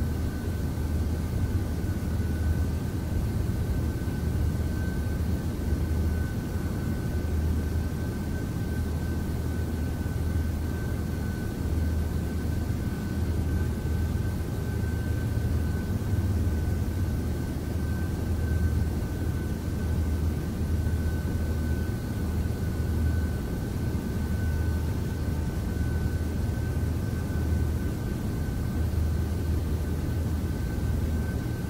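Steady low rumbling drone, gently swelling and easing, with a thin steady high tone held above it.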